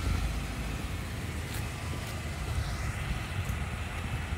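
Steady low rumble of an idling vehicle engine, with light wind noise on the microphone.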